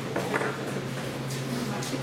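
Voices shouting in a boxing hall over a steady low hum, with a few short sharp sounds in between.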